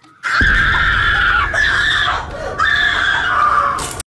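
A person screaming in fright: two long, loud, high-pitched screams with a short break about two seconds in, cutting off suddenly near the end.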